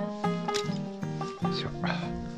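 Background music of strummed acoustic guitar chords, with two short noisy sounds over it, one about a quarter of the way in and one near the end.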